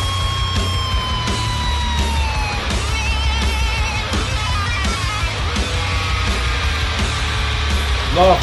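Death-doom metal song playing, heavy and dense with a strong low end. A high held note slides slowly down in pitch over the first couple of seconds, followed by notes with a fast vibrato.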